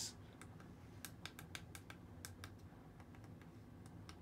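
Faint, quick clicks of the front-panel buttons on an Auber SWA-2451 PID temperature controller, pressed about a dozen times in irregular runs. The presses step the set value up from 80 to 250 degrees.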